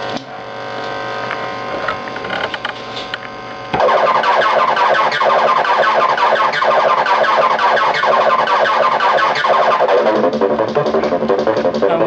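Atari Punk Console synth box, a DIY circuit of two 555-timer oscillators, making a steady electronic buzzing tone picked up by a camera microphone. About four seconds in it jumps suddenly louder into a fast chattering, warbling tone, which shifts again near the end as its knobs are turned.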